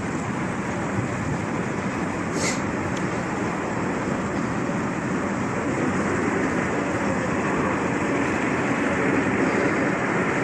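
Steady, even running noise from several go-kart engines idling in the pits, blended with vehicle noise, growing slightly louder toward the end. A brief high squeal about two and a half seconds in.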